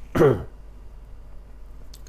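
A man's single short vocal sound, one falling syllable like a hesitation or throat-clearing, followed by a pause with only faint room tone.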